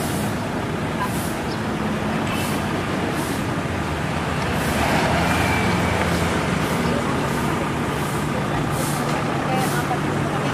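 A vehicle engine idling steadily over street traffic noise, swelling a little about halfway through.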